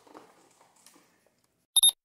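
A short, high-pitched electronic beep near the end, a quick flutter of several pulses, after faint handling noise.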